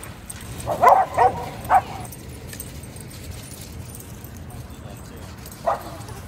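A dog barking in play: three short barks in quick succession about a second in, and one more near the end.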